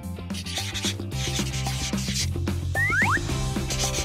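Background music with a steady bass line, over the scratchy rubbing of a marker pen drawing on a paper poster in short strokes. A couple of short rising squeaks come about three seconds in.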